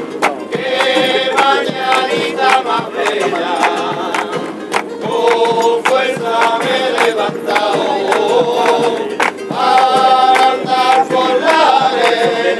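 Amateur rociero choir singing a Rocío pilgrimage song in chorus, with steady hand-clapping in time to it.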